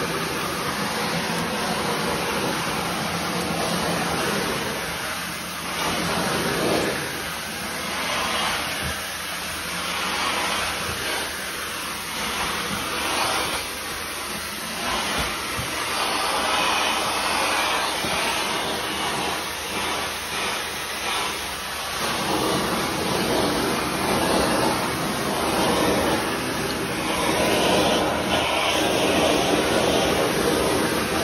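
Suction of a carpet-and-tile cleaning extractor rushing through a stainless wand and hard-surface floor tool as it is pulled across wet tile, drawing up the rinse water. A steady hiss that swells and eases with the strokes.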